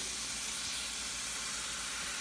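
Steady, soft sizzle of chopped onions, green pepper and raw ground turkey frying in a pan on low heat.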